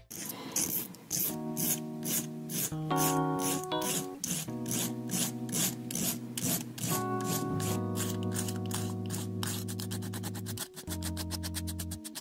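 Nail file scraping back and forth along the edge of a fingerboard deck, filing off the overhanging paper wrapper. The strokes come about two a second at first and turn into quick, rapid strokes about nine seconds in.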